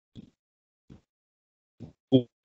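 Near silence on a gated video-call line, broken by three brief, faint voice sounds, like hesitation noises between words.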